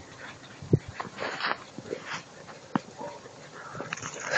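Dogs running and playing in snow: scattered short crunches and scuffles, with a couple of sharper snaps, and no clear bark.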